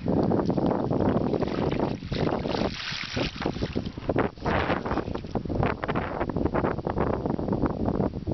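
Water being poured and splashing over a hard plastic case sitting in a tub of water, with wind rumbling on the microphone.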